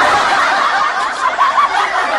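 Canned laughter: a crowd laughing together, many overlapping voices, dubbed in as a comedy sound effect.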